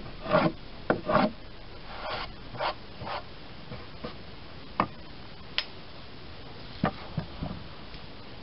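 Wood scraping and knocking on wood as boards and slats are handled on a wooden trestle: a quick run of short scrapes and knocks in the first three seconds, then a few sharp single clicks.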